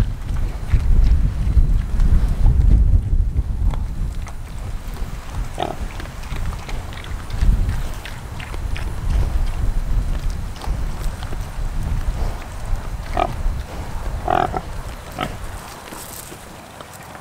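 Meat pigs grunting as they eat feed off the ground, with a few short calls: one about six seconds in and two near the end. Wind rumbles on the microphone throughout, heaviest in the first half.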